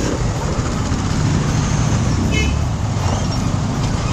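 KTM Duke 200 motorcycle's single-cylinder engine idling steadily under the rider, with rumbling noise on the helmet microphone. A brief high-pitched chirp sounds about two and a half seconds in.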